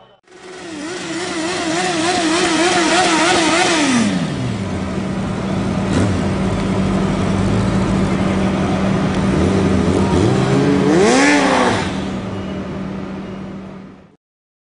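Motorcycle engine revving loudly in quick repeated throttle blips, with the revs dropping back about four seconds in to a steady running note. Near the end it is revved up and back down once more.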